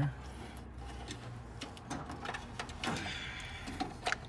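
Scattered light clicks and knocks from hand work on parts in a car's engine bay, over a low steady hum, with a brief mumbled voice about three seconds in.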